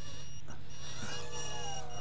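A micro quadcopter's onboard buzzer sounds in long high beeps with short breaks, while about a second in its brushed motors spin up with a whine as it lifts off. The pilot guesses the beeping is set off by the high-voltage battery's voltage being a little high after a fresh charge.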